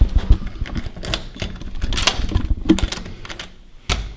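Key rattling and turning in a door's lock cylinder: a run of irregular metallic clicks, with a sharp click near the end.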